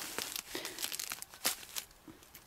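Woolly lamb's ear leaves being picked by hand: a run of small crinkling snaps and rustles as the leaves are torn from the plant, the sharpest snap about one and a half seconds in.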